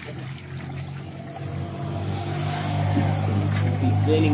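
A motor vehicle's engine droning steadily and growing louder through the second half. At first there is a faint wash of water pouring into a plastic basin.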